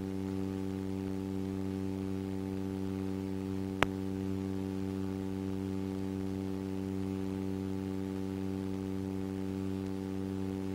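Steady electrical hum with a stack of even overtones, the background noise of an old film soundtrack with no narration over it. A single sharp click comes a little under four seconds in.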